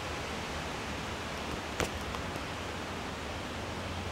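Steady, even hiss of outdoor background noise, with one short click a little under two seconds in.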